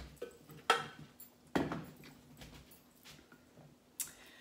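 A few clicks and knocks of kitchen things being handled, the loudest a heavier knock about one and a half seconds in, as the stainless-steel Thermomix mixing bowl and spatula are put down.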